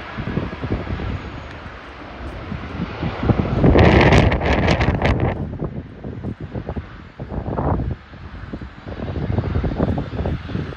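Wind buffeting the microphone, strongest in a gust from about three and a half to five seconds in, over the low rumble of a taxiing jet airliner.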